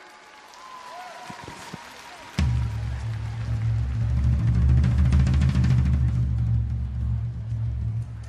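Audience applause. About two and a half seconds in, a song's instrumental introduction starts suddenly, with loud, steady bass and drums.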